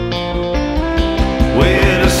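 Live rock band playing an instrumental passage: electric guitar over bass and drums, with a note bent upward near the end.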